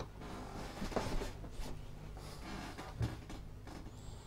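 Handling noise from the open green plastic housing of a dosimeter charger being picked up and turned over in the hands. Rubbing and rustling, with small knocks about a second in and again near three seconds.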